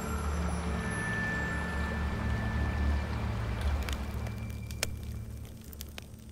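Rushing river water under a low, held music drone, fading down in the second half, with a few sharp clicks near the end.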